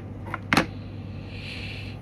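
A single sharp click, with a smaller one just before it, as a handheld radio is handled on a table, over a steady low hum.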